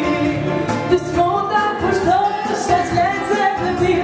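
A woman singing into a microphone over amplified dance music with a steady beat.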